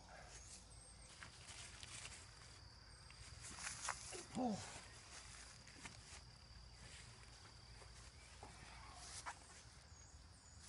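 Faint steady chirring of crickets, with a few soft rustles and clicks from the skinning work. A man's short 'oh' comes about four seconds in.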